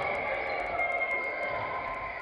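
Steady, echoing din of an indoor five-a-side football hall, with players' voices calling across the pitch.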